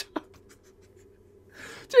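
Faint low room hum with a few small clicks, then a man's soft breath in near the end, just before his voice comes back.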